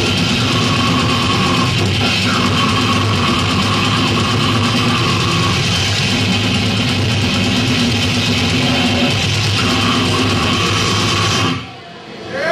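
A death metal band playing live at full volume, heard from the crowd: heavily distorted electric guitars and bass over fast drums. The music stops abruptly about half a second before the end.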